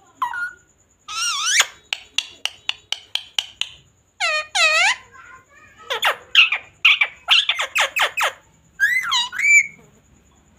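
Indian ringneck parakeet calling and chattering: short whistled calls, a string of quick clicks, two arched calls, then a rapid run of falling chirps and a few more calls near the end.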